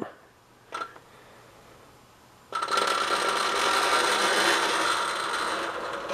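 Large plastic diffuser sheets of an LED TV backlight sliding and rubbing as they are lifted out: a faint click about a second in, then a steady rushing hiss starting about halfway through and lasting about three seconds.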